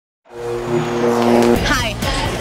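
Short channel logo sting: a held chord of steady tones over a whooshing noise, lasting about a second. It ends about one and a half seconds in, and a voice over music follows.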